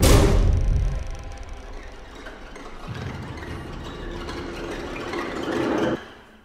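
Horror trailer sound design: a sudden loud hit with a deep boom, then a dark sustained drone that swells again and cuts off suddenly near the end.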